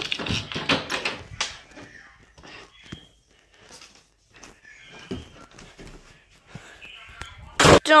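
Scattered light knocks and rustles from a hand-held phone camera being carried through a room, then a short laugh near the end.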